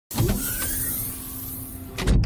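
Whoosh sound effect for an animated logo intro: a loud rush of noise that starts suddenly and slowly fades, with a faint rising tone under it. It ends in a hit at the very end.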